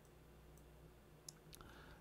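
Near silence: room tone with a faint low hum, broken by a quick, faint pair of clicks about a second and a quarter in.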